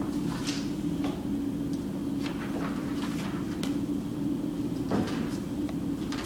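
Sheets of drawing paper being swapped and set down on a projector, a few scattered rustles and light taps over a steady low hum.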